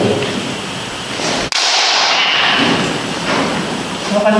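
Kendo sparring with bamboo shinai during dou-strike practice: a sharp hit about a second and a half in, followed by a loud, noisy rush of sound as the exchange goes on.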